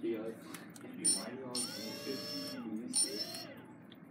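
OpenROV 2.8's brushless thruster motors spinning in air: a high-pitched electric whine that chirps briefly about a second in, holds for about a second in the middle, and chirps again near three seconds, under indistinct voices.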